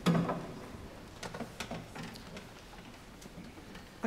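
Hall noise between pieces: rustling and a few scattered small clicks and knocks from performers and audience settling, with a brief low sound at the very start.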